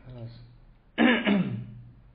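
A person clearing the throat once, short and loud, about a second in, after a brief low voiced sound at the start.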